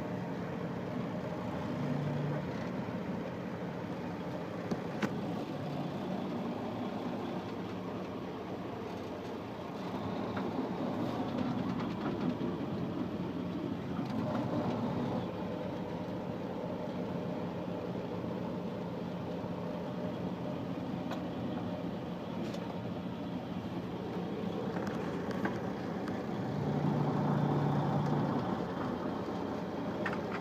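Car engine and road noise heard from inside the cabin while driving slowly, a steady low hum that grows louder for a few seconds twice, about a third of the way in and near the end.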